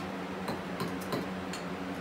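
A few light clicks and ticks from small objects being handled at a workbench, over a steady low hum.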